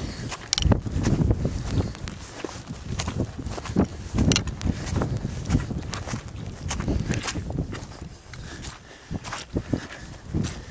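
Footsteps pushing through rough tussock grass, with irregular rustles and knocks over a low, uneven rumble.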